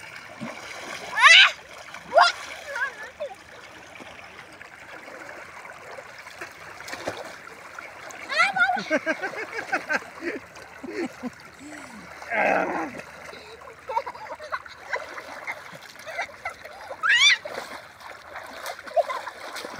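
Water splashing as people bathe and play in a flowing river, over the steady rush of the current, with a few brief shouts and cries.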